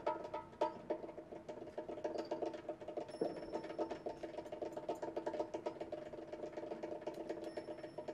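Bongos played rapidly with bare hands: a fast, even roll of light strokes that follows a couple of stronger opening hits.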